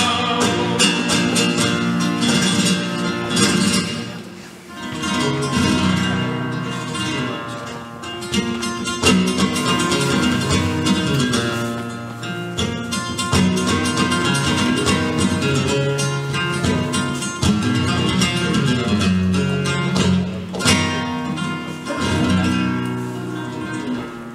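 Flamenco guitar playing a solo passage between sung lines, with strummed chords and runs of plucked notes. The playing eases briefly about four seconds in, then picks up again.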